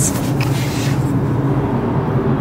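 Steady engine and tyre noise of a moving car, heard from inside the cabin, with a brief hiss near the start.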